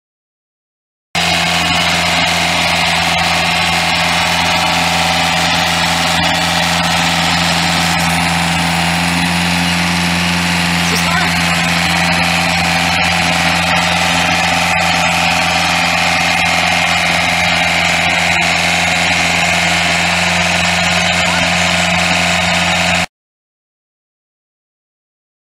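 Protech tracked post driver's 48 hp Yanmar diesel engine running steadily as the machine tracks across grass. The sound cuts in about a second in and cuts off suddenly a second before the end.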